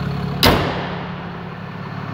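The hood of a Ram 2500 pickup slammed shut about half a second in: one sharp bang with a short ring-out. Under it the truck's 6.7-liter Cummins diesel idles steadily, its low hum weaker once the hood is down.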